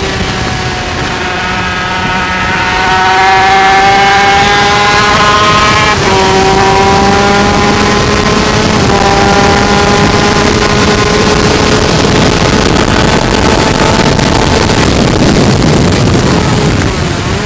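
Yamaha TZ250 two-stroke racing engine at high revs under acceleration, heard from the bike, over a rush of wind noise. The pitch climbs steadily, then steps down twice, about six and about nine seconds in, as it shifts up, and climbs again.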